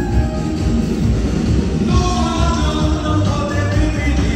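Live rock band playing through a large hall's PA, with electric bass, drums and keyboards and a singing voice, picked up from among the audience. The music grows fuller and brighter about halfway through.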